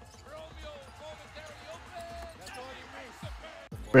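Faint broadcast game audio of a basketball being dribbled on a hardwood arena court, a few low bounces standing out in the second half, over arena crowd noise.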